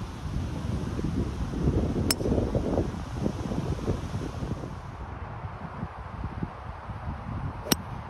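Two golf drives: a sharp click of a driver's clubface striking the ball about two seconds in, then a second, louder crack of a drive near the end. Wind rumbles on the microphone throughout.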